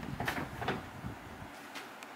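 Handling noise: about four short knocks and rustles as a handheld digital multimeter and a paper manual are moved about and the meter is set down on a table.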